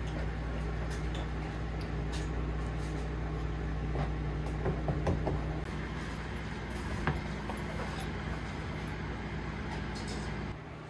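A steady low electrical hum with a few faint scrapes and clicks over it.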